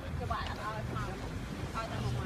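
Wind buffeting the microphone in a low, steady rumble, with faint voices of people talking over it.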